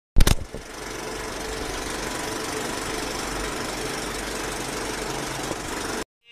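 Film projector sound effect: a loud click at the start, then a steady mechanical rattle and whir that cuts off suddenly.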